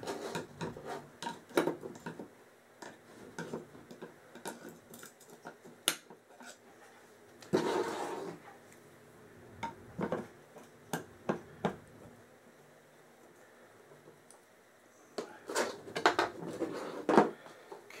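Scattered clicks and taps of a steel punch and small metal parts against the plastic receiver halves of a Crosman 760 air rifle and the table top, as the trigger and safety parts are worked loose. There is a short scrape about eight seconds in and a quicker run of clicks near the end.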